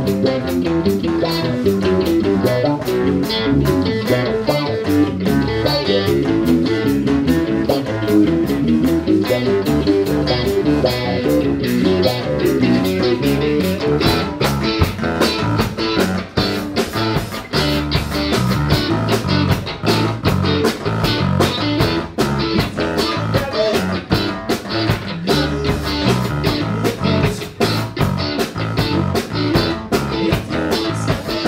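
Live band playing an instrumental: a Stratocaster-style electric guitar over bass guitar and a drum kit keeping a steady, fast beat.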